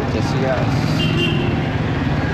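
Street noise: a vehicle engine running steadily close by, with people talking in the background and a brief high tone about a second in.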